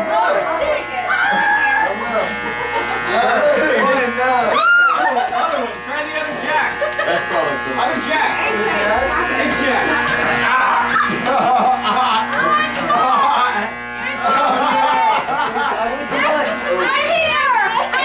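Circuit-bent electronic noise music: a loud, steady buzzing drone of many stacked tones, cut through by swooping pitch glides, with one big rise-and-fall sweep about five seconds in and quick warbling sweeps near the end. Party voices shout over it.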